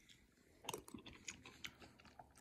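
Faint mouth sounds of someone chewing a mouthful of rice porridge (congee) with crispy toppings. The sound is a run of small, soft clicks and smacks that starts well under a second in.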